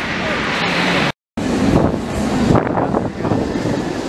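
Incredible Hulk steel roller coaster train running along its track in a test run. About a second in the sound breaks off abruptly at an edit, and wind buffeting the microphone follows, with voices of people in the crowd.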